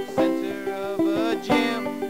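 Five-string banjo picked live in a quick run of plucked notes, with a voice holding long gliding notes over it.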